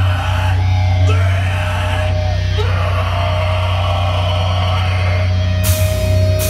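Live heavy band on stage: a loud distorted guitar and bass chord held as a steady drone with a voice yelling over it. Drums and cymbals crash in near the end as the song gets going.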